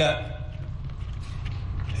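A pause in a man's amplified speech: the tail of his last word at the very start, then a steady low background rumble through the sound system until he speaks again.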